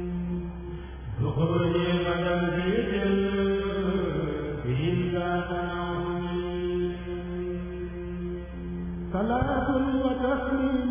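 A kurel, a male choir, chanting a qasida a cappella: low held notes sustained underneath while higher voices rise and fall over them. A louder voice comes in near the end.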